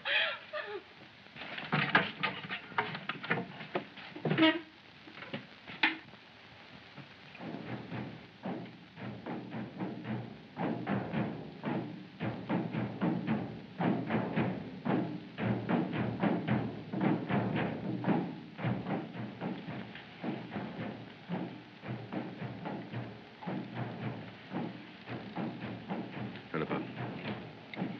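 Drums beating a fast, steady rhythm, starting about seven seconds in and going on without a break, after a few scattered knocks.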